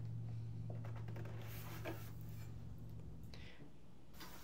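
Faint rustling and light taps as the 3D printer's plastic base and frame are handled and set back upright on a table, over a steady low hum that stops shortly before the end.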